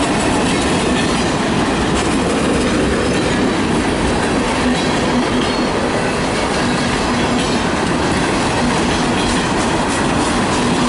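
Railroad tank cars of a freight train rolling past: steady, loud noise of steel wheels running on the rails.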